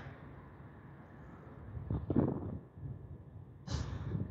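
Quiet low background rumble with faint handling noises as hand tools are worked at a trailer light's wiring. There is a brief soft sound about two seconds in and a short, sharper one near the end.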